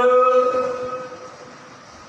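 A man's voice holding one long drawn-out note, which then rings on and fades away over about a second and a half.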